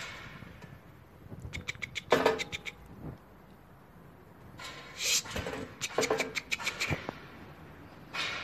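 Marten trapped in a wire-mesh box trap, hissing and chattering in short bursts of rapid clicks: once about two seconds in and again from about five to seven seconds.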